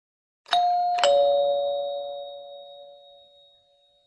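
Two-note ding-dong chime: a higher note, then a lower one half a second later, both ringing on and fading out over about three seconds. It is the notification-bell sound effect of a subscribe-button animation.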